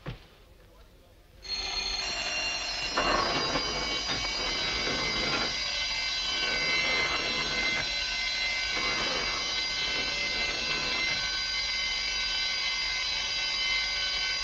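Electric burglar-alarm bell ringing continuously. It is tripped by lifting an exhibit off its contact, and it starts suddenly about a second and a half in.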